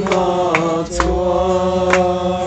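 A group of men singing together in long held notes, with an acoustic guitar strummed a few sharp strokes beneath them.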